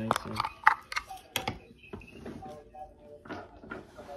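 Handling noise: several sharp clicks and knocks in the first second and a half as a plastic handheld radio and the phone filming it are moved about, then quieter handling.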